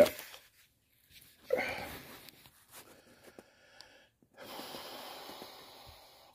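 A man's wheezing breath about a second and a half in, then a few faint ticks and a steady soft hiss for the last second and a half.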